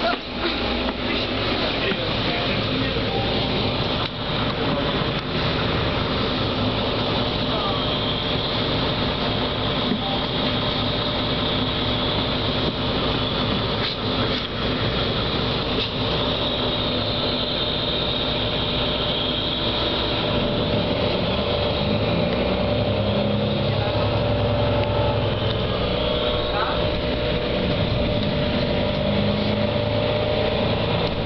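Cabin noise of a city bus on the move on a wet road: steady engine and road noise throughout, with the engine's pitch rising and falling in the second half.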